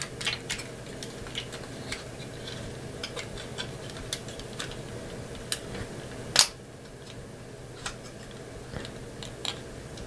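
Small plastic clicks and taps as fingers pry open the titanium-finish plastic armor panels on the leg of a Daban MG Sazabi model kit, with a sharper click about six seconds in. A faint low hum runs underneath.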